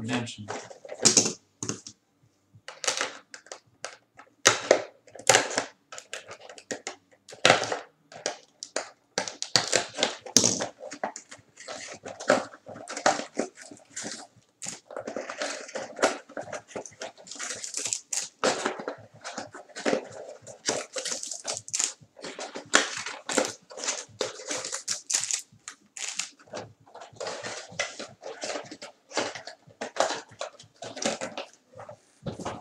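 Card packaging being handled and opened: irregular bursts of crinkling and tearing from pack wrappers and cardboard boxes.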